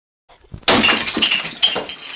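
Sound effect of window glass being smashed by a hammer: a sudden loud crash, then a second crash about a second later, with broken glass tinkling as it dies away.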